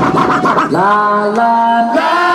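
DJ turntable scratching: quick chopped strokes on a record for under a second, then the record is let go and a held, voice-like musical tone glides up into pitch and plays on, stepping to a new note partway through.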